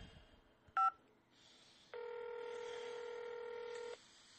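A single short touch-tone keypress beep on a phone line, the caller pressing 5 to reach dispatch. About a second later comes a steady two-second telephone ringback tone as the call rings through, cutting off abruptly near the end.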